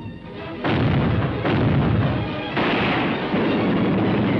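Cannon fire: three blasts about a second apart, each followed by a long noisy tail, with film music underneath.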